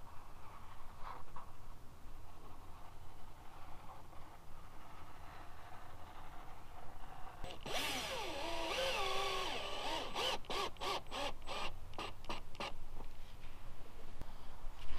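Power drill driving self-tapping screws up into the plastic rocker panel: about eight seconds in, a whine that speeds up and slows, then a run of short trigger bursts, about three a second.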